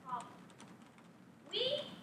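A young woman's voice delivering a prepared speech in a room: a short word just after the start, a pause, then a louder phrase in the second half.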